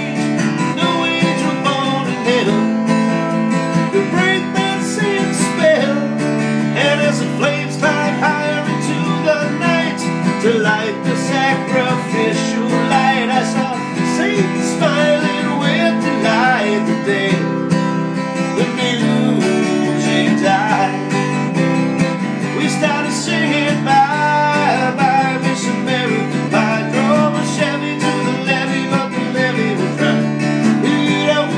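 Six-string Gibson acoustic guitar strummed steadily, playing a continuous chord accompaniment with a regular rhythm.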